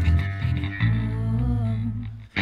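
Progressive rock music: the full band plays, then a little under a second in it drops to a sustained low note with a wavering vocal line over it, thinning out near the end.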